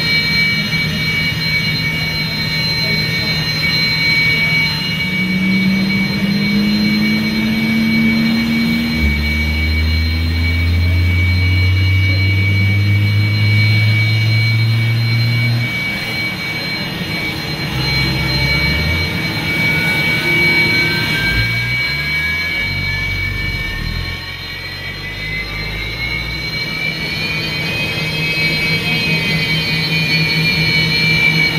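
Su-30MKM's twin AL-31FP turbofan engines running on the ground, a steady high turbine whine over a low hum. In the second half, a whine climbs slowly in pitch over several seconds as an engine spools up.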